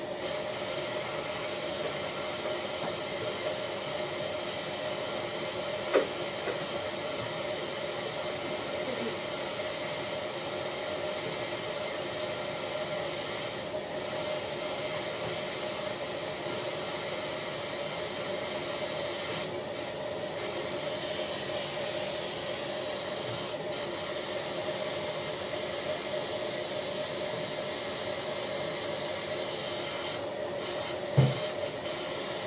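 Dental surgical suction running with a steady hiss and hum. Three short high beeps sound about seven to ten seconds in, with a single click just before them.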